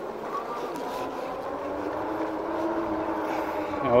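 Electric fat bike's rear hub motor whining steadily as the bike rolls, with tyre and wind noise, slowly getting louder.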